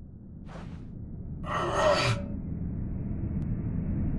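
Low, steady rumble fading up from silence. Over it comes a short breath in about half a second in, then a louder, voiced gasp about a second and a half in, as of someone waking.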